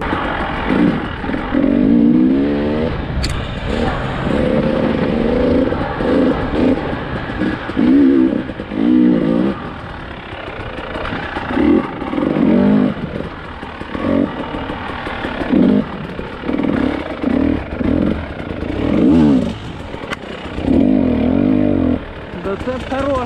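KTM 300 EXC two-stroke single-cylinder enduro engine under way off-road. It revs up and down over and over as the throttle is opened and closed every second or two.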